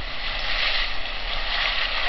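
Steady, loud hissing background noise without any clear events in it.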